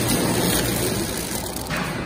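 Automatic biscuit flow-wrap packing machine running at its set 260 packs a minute, a steady mechanical clatter with a hiss over it. About one and a half seconds in the hiss drops away as the machine is stopped.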